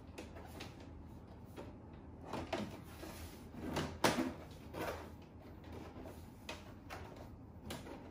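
Plastic mesh pre-filter being pressed and seated onto the front of a Samsung AX60R5080WD air purifier: several light plastic knocks and clicks, the sharpest about four seconds in.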